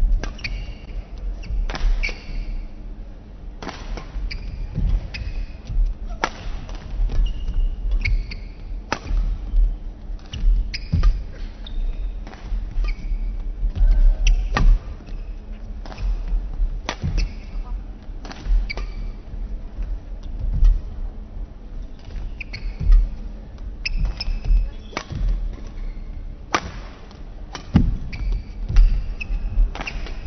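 A long badminton rally: sharp racket strikes on the shuttlecock every second or two, with players' shoes squeaking on the court and feet thudding as they move and lunge.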